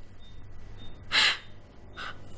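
A single short, noisy breath about a second in, over faint room tone.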